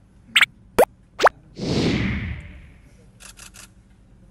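Outro logo animation sound effects: three quick sweeping pops, then a louder whoosh that fades over about a second, then three short soft blips near the end.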